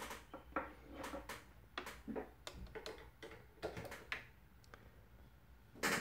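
Handling noise: scattered light clicks and knocks, several a second for about four seconds, then a quieter stretch.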